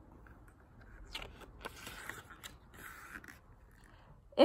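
Faint rustling and crinkling of a picture book's pages as they are handled and turned, with a few small clicks.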